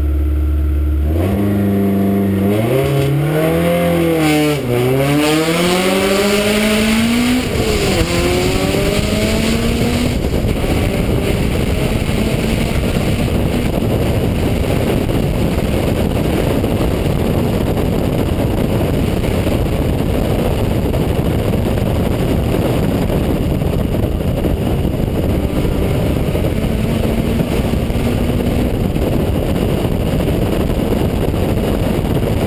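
Citroën Saxo VTS 16V rally car's 1.6-litre 16-valve four-cylinder engine launching hard from a standstill about a second in, climbing in pitch through several quick upshifts. It then runs at high revs and speed under heavy wind and road noise on the onboard microphone.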